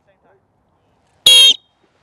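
A coach's whistle blown once: a short, sharp, high-pitched blast about a second in, the signal to start a timed running drill.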